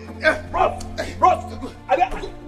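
Film score with a steady low drone, under short shouts and grunts from men grappling in a fight.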